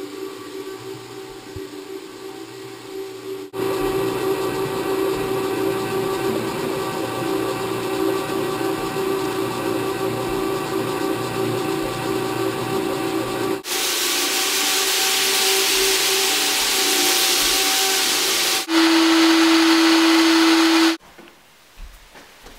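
Rotary floor buffer's motor running steadily as its abrasive screen pad buffs a hardwood floor, with a steady hum and tones. The sound changes abruptly several times. From about two-thirds through, a loud hiss joins it, then a single strong hum with hiss, which cuts off sharply shortly before the end.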